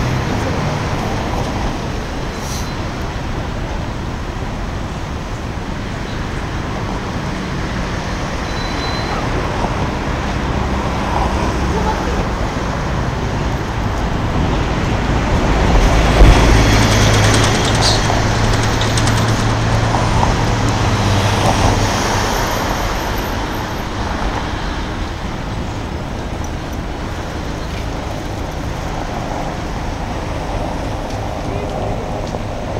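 Steady road traffic noise. A little past halfway it swells for several seconds as a heavier vehicle passes with a low engine hum, then eases back.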